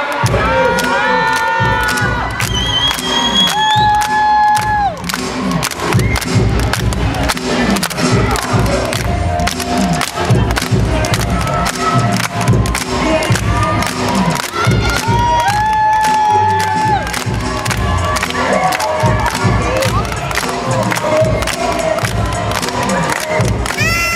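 Hip hop dance music with a steady, pounding beat under a crowd of children cheering and shouting. Several long, high-pitched cries of about a second each rise above the noise.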